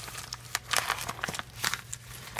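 Plastic vacuum-sealer bag crinkling and rustling in irregular bursts as it is handled.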